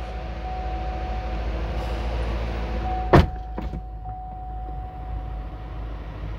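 2011 Chevrolet Corvette's 6.2-litre LS3 V8 idling just after start-up, heard from inside the cabin, a steady low rumble at a raised idle. A sharp knock about three seconds in, with a lighter one just after.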